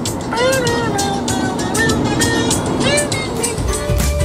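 A man singing a wordless 'doot doot' tune in gliding, swooping notes over the steady road and engine noise inside a moving car. Near the end, music with a steady bass line comes in.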